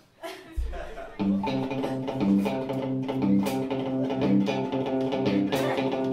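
Live rock band starting a song on electric guitar, bass guitar and drums. After a single low note, the full band comes in about a second in with a steady beat and repeating bass line.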